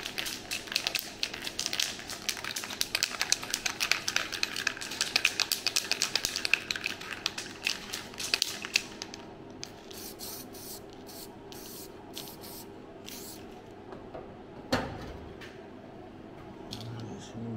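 An aerosol can of copper weld-through primer shaken hard, its mixing ball rattling in a rapid run of clicks for about nine seconds, then sprayed in several short hissing bursts onto the bare steel of a car's strut-top panel. A single knock comes near the end.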